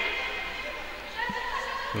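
Sports hall ambience: faint, echoing voices of players and spectators calling across a large indoor court, with one soft thud a little past halfway.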